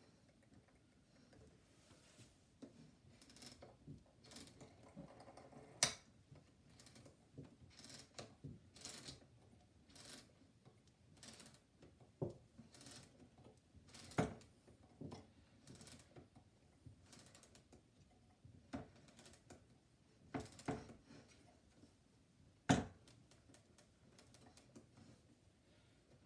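Clicks and knocks from a cylinder phonograph's mechanism being handled and set up by hand, coming every second or so, with a few sharper knocks about six, fourteen and twenty-three seconds in.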